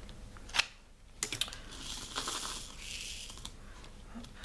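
Small hard plastic clicks from handling diamond painting resin drills and tools: one sharp click, a quick run of clicks, then about a second and a half of light scraping rattle.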